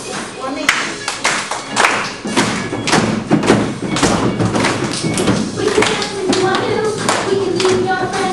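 A run of irregular claps and thuds, several a second, over voices.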